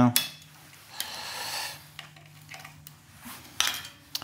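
Small metallic clicks and a short scrape as a 5 mm Allen key works the cable clamp bolt of a Shimano Ultegra 6800 front derailleur, loosening it to free the gear cable. The scrape comes about a second in, and a sharper metal click near the end.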